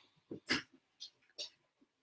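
Faint background noises from a household with family just arriving home: four short sounds, the loudest about half a second in.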